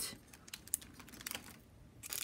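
Faint, scattered light clicks and taps from small items in clear plastic packaging being handled: a pin card set down and a pen in a plastic sleeve picked up.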